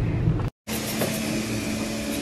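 Low rumble of a car cabin for half a second, then a sudden cut to a steady hum carrying a thin, even whine.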